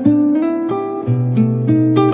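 Acoustic guitar playing a slow fingerpicked melody: single plucked notes ringing over sustained bass notes.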